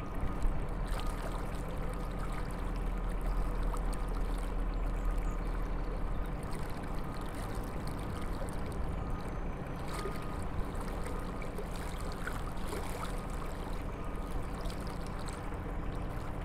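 Narrowboat engine running steadily.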